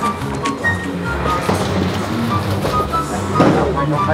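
Background music: a melody of short held notes over a steady low accompaniment.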